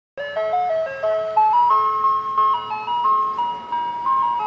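Channel intro music: a bright melody of clear single notes, stepping up and down every fraction of a second.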